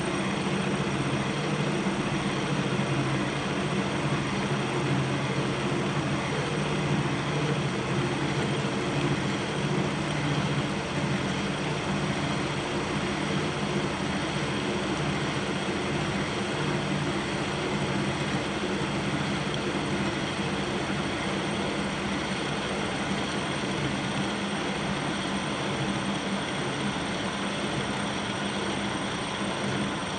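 Kearney & Trecker K 2HL horizontal milling machine taking a heavy cut, its arbor-mounted cutter milling steadily through the workpiece under power table feed, at a 0.200-inch depth of cut and 3.5 inches per minute. The spindle drive makes a steady low drone, and the cutter's chip noise runs over it.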